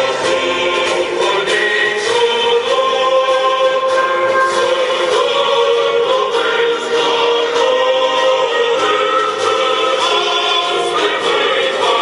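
A choir singing, with long held notes.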